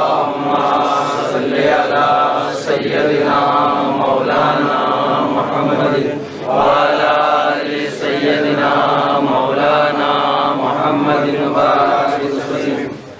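Men's voices chanting the Arabic salawat, a blessing on the Prophet Muhammad, in long drawn-out melodic phrases with short breaks between them.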